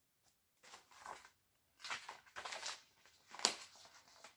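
Faint rustling of a paper booklet as it is handled and its page turned, in a few soft bursts, with a sharper rustle about three and a half seconds in.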